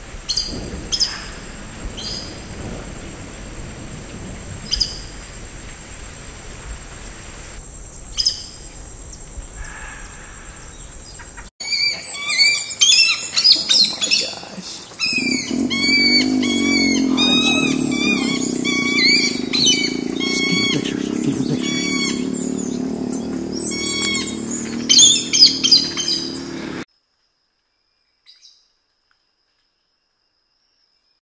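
Rain falling, with a thin steady high tone and short sharp bird calls every second or few seconds. After a sudden break comes a dense burst of many overlapping high bird calls over a loud, wavering low hum. It all cuts off abruptly near the end.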